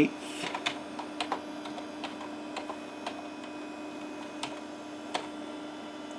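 Computer keyboard keys typed one at a time, a quick run of clicks in the first second and then a few slower, spaced keystrokes, over a steady low hum.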